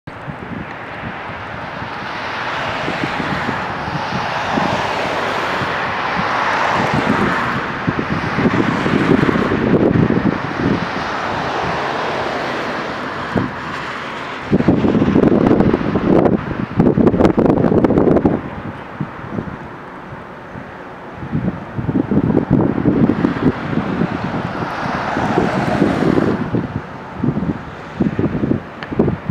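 Wind gusting against the microphone in irregular low rumbling bursts, strongest in the middle and later part, over the hiss of cars passing by that swells and fades several times.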